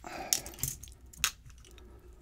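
Small metal clicks and rattles from taking apart a brass lock cylinder by hand, with a small tool against the metal. Three sharp clicks stand out, the loudest a little over a second in.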